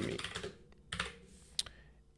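Computer keyboard typing: a few separate, fairly faint keystrokes.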